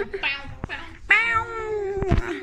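A person imitating a cat: short playful 'bow, bow' calls, then one long meow-like call that slides down in pitch through the second half.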